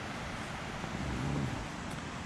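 Steady outdoor background noise, like wind on the microphone, with no distinct events.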